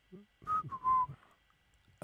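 A person whistling two short notes, the second a little lower and longer than the first.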